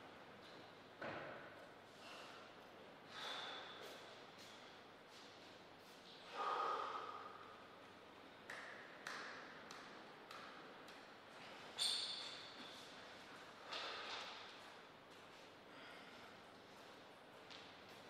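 Faint, scattered short sounds from players between table tennis points: soft taps and brief squeaks, one every two or three seconds, with no rally being played.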